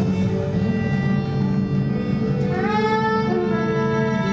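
Live band music: sustained pitched notes over a steady low drone, with one note sliding upward about two and a half seconds in.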